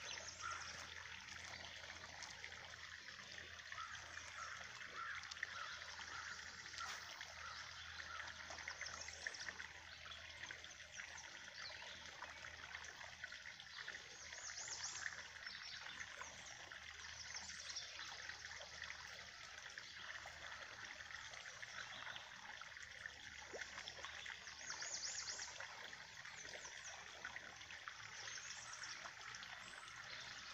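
Faint, steady trickle of rainwater runoff spilling from a drain pipe into a pond, swelling briefly twice.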